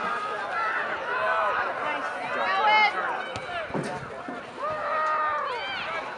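Several voices shouting and calling out over one another from the sidelines and the field during a soccer match, with a louder burst of high-pitched shouts about two and a half seconds in and again near the end.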